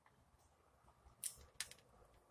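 Mostly quiet, with two brief crisp clicks a third of a second apart, after about a second: mouth sounds while eating lamb birria.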